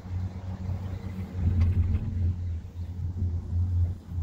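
Low, steady rumble of a gondola cabin riding along its cable, growing louder about a third of the way in.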